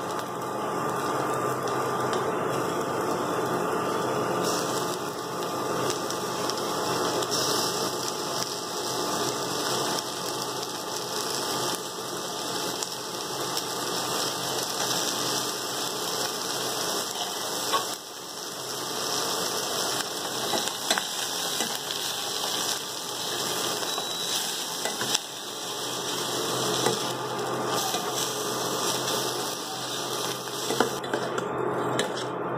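Onions, capsicum and prawns frying in a steel kadai on an induction cooktop: a steady sizzle with the cooktop's faint electrical hum underneath, and a few sharp clinks of a spatula on the pan.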